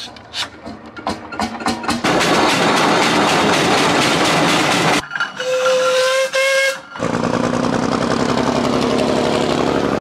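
A steam traction engine's whistle blowing one long steady note about halfway through, cutting off suddenly. Before it come irregular clicks and knocks and a loud noisy stretch, and after it an engine running steadily.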